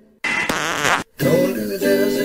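A recorded song cuts off, and after a short gap a buzzy, wavering sound lasts under a second. After another brief gap a new song starts with strummed guitar.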